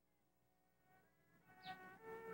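Near silence at first. In the second half, faint steady humming tones at several pitches come in and slowly grow louder, with one brief rising glide near the end.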